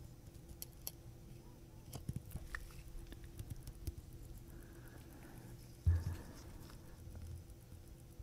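Faint, irregular small clicks and taps of brass tweezers working on a Rolex calibre 3035 watch movement, with one soft low bump about six seconds in.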